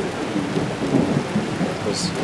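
Steady low rumbling noise with no clear pattern.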